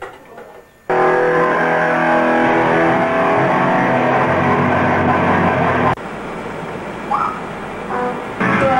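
Loud rock band music with electric guitar. It bursts in suddenly about a second in, holds a dense, steady chord for several seconds, and cuts off abruptly at about six seconds to a much quieter background.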